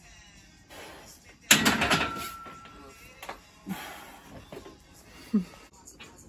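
A loud metallic clank with a short ringing tone about a second and a half in, from a loaded barbell and its iron plates during a bench press. Smaller knocks follow, with two short grunts of effort near the middle and the end, over faint background music.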